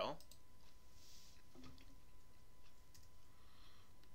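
A few faint computer mouse clicks over low room tone.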